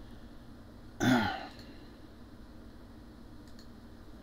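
A man's short wordless vocal sound, falling in pitch, about a second in, over quiet room tone. A couple of faint computer mouse clicks come near the end.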